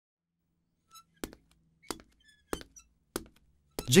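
Five slow, evenly spaced heavy thuds, about two-thirds of a second apart, starting about a second in. A man's voice begins at the very end.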